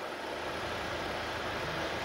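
Chevrolet Captiva engine idling, a steady low running sound heard through the open boot, while the hydrogen cell draws about 5 amps.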